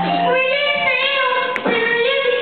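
A woman singing in a high, childlike voice, holding long notes that waver slightly.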